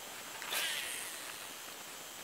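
A cast with a Sougayilang baitcasting reel: a brief swish about half a second in, then a faint hiss of the spool paying out line that fades away over about a second.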